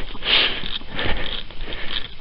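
Footsteps rustling and crunching through dry grass and loose soil, an uneven noisy scuffing with a few small crackles.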